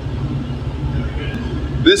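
Boat's automatic bilge pump running: a steady low rumble.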